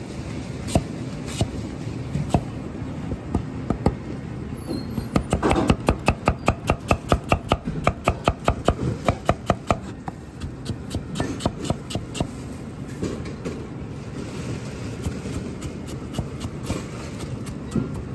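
Chinese cleaver cutting an onion on a plastic cutting board. Single knocks come spaced apart at first, then a fast, even run of chopping strikes, about five a second, from about five to ten seconds in, followed by lighter, irregular chops.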